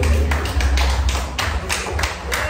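Rhythmic hand clapping, about three claps a second, over a steady low rumble.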